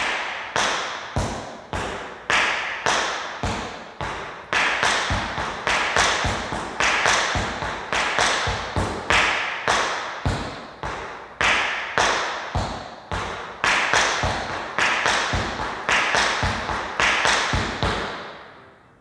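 Tap shoes on a wooden floor beating out cramp rolls, each a quick cluster of four taps (ball, ball, heel, heel), in a steady rhythm that alternates between slow cramp rolls on quarter notes and fast ones on eighth notes.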